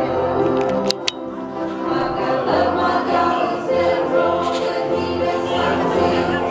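Praise and worship music with group singing. Two sharp clicks come about a second in.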